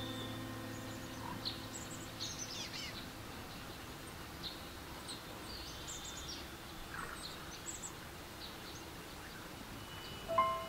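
Faint, scattered bird chirps over a steady low hiss, with a piano chord dying away at the start.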